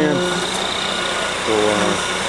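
A concrete mixer truck's engine runs steadily with an even drone. A man's voice cuts in briefly near the end.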